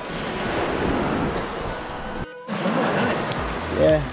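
Surf washing on a sandy beach, with wind rushing on the microphone, over faint background music. The sound drops out for a moment about halfway. A short voiced call near the end is the loudest moment.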